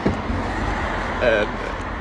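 Steady low rumble of a car or nearby road traffic, with a short burst of voice a little past halfway.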